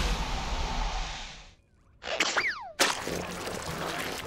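Cartoon sound effects after a giant zit bursts: a wash of noise that fades out, a brief silence, then a short falling whistle-like tone ending in a sharp click, followed by a low steady hiss.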